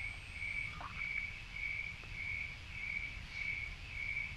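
A cricket chirping in a steady, even rhythm, just under two chirps a second, over a low background hum.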